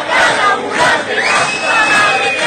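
Several people shouting and jeering at once, their voices overlapping, with a long high-pitched yell near the end.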